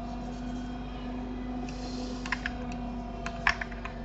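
Computer keyboard clicking: a few key clicks about two seconds in, then a quicker cluster near the end, over a steady low electrical hum.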